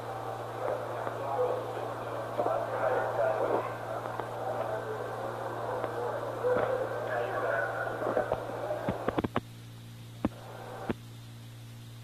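Muffled, narrow-band radio voice chatter over a steady low hum, as on a 1960s mission communications loop, with no words clear. About nine seconds in the voices stop with a few sharp clicks, leaving only hum and hiss.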